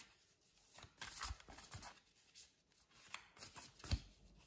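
A deck of oracle cards being shuffled by hand: quiet, irregular soft slaps and rustles of the cards against each other.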